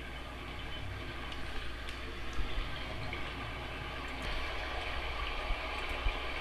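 Steady rushing noise with a low rumble underneath, starting abruptly out of silence.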